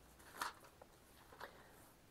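Faint papery rustle of thin Bible pages being turned by hand. The clearest rustle comes about half a second in, and a softer one a second later.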